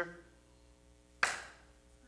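A single sharp knock about a second in, with a short ring of room echo after it, against a faint steady hum.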